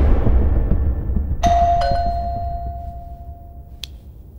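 A deep rumble of film score fades out, then a two-note electronic chime sounds, high then low, ringing on steadily for about two seconds before a short click cuts it off.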